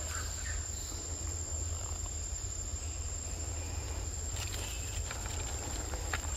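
Forest ambience: a steady high-pitched insect drone over a low rumble, with a few faint clicks and rustles about four and a half seconds in.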